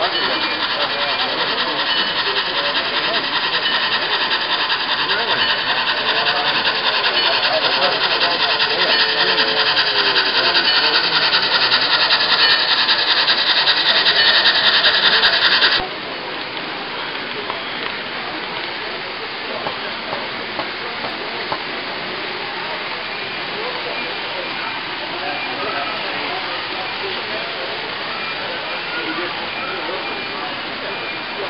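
Model train running on its layout track, a steady rushing wheel-and-motor noise that grows louder as it nears, then drops abruptly a little past halfway and carries on quieter. A murmur of voices sits underneath.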